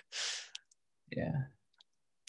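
A man's short breathy exhale, about half a second long, then he says "yeah"; a couple of faint clicks follow.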